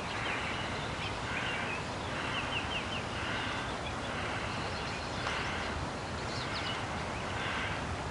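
Outdoor riverside ambience: birds chirping now and then over a steady background hiss.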